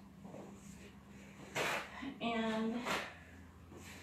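A woman's voice, two short spoken bursts about halfway through, over a steady low hum; the first second and a half is quiet.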